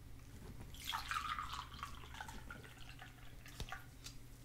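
Tea poured from a paper takeaway cup into a china teacup, the stream starting about a second in, loudest at first and then thinning out, with a sharp click near the end.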